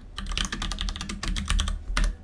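Typing on a computer keyboard: a fast, uneven run of keystroke clicks.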